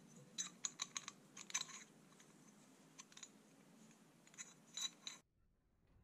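Light metallic clicks and clinks as a welded steel bell crank with its rod end bearings is handled, coming in small clusters. The sound cuts off abruptly about five seconds in.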